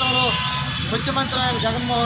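A man speaking, his voice over a steady low background rumble.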